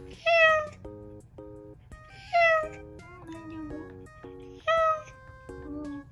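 Cat meowing from inside a mesh pet carrier, three meows about two seconds apart, each falling in pitch, over background music.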